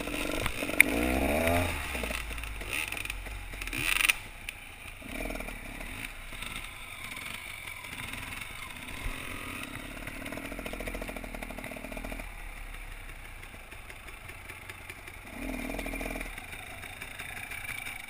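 Two-stroke dirt bike engines, a KTM 300 EXC among them, running at low speed over rough ground, revving up in the first couple of seconds and then rising and falling with the throttle. A short loud clatter about four seconds in.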